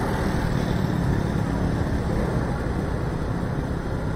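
Steady engine and road noise of a motorbike ridden slowly in traffic, an even rumble with no sudden sounds.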